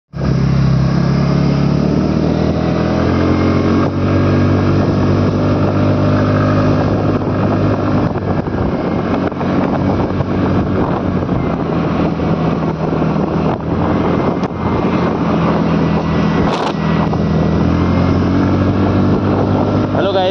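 Scooter engine running steadily while riding, its pitch shifting a little now and then, with wind and road noise on the microphone.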